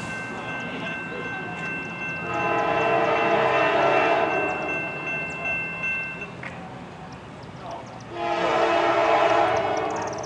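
Diesel locomotive air horn sounding as the train approaches: a long chord blast of about three and a half seconds, then a shorter blast of about a second and a half roughly two seconds later.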